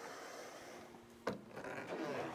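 Faint hiss, then a single sharp click a little over a second in as the wooden door of the chicken run is opened, followed by faint knocking.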